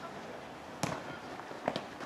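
A futsal ball being kicked during play: a few sharp thuds, the loudest about a second in and a couple of lighter ones near the end.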